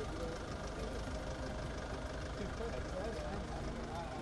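A car engine idling close by, a steady low hum, with faint voices of a crowd in the background.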